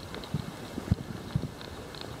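Muffled sound from a camera held underwater in the sea: a steady low rumble with several irregular dull knocks, the loudest about a second in.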